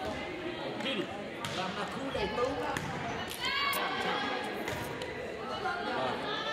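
Volleyball being bounced and struck during a serve and rally: a few sharp smacks that echo around the gym, over spectators' chatter, with a loud call from a voice a little past the middle.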